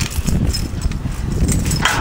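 Low, irregular rumbling noise on the camera microphone as the camera is swung about. A man's voice starts right at the end.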